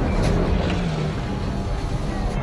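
Film sound mix: the deep rumbling roar of a giant armoured alien flying creature (a Chitauri Leviathan) sweeping past, loudest near the start, under orchestral score.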